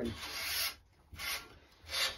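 Squash string being pulled through the racket's main strings while a cross is woven, a hissing rub of string on string in three pulls, the first the longest.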